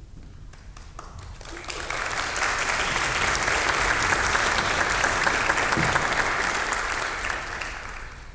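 Congregation applauding: a few scattered claps at first, swelling to full applause about two seconds in, then dying away near the end.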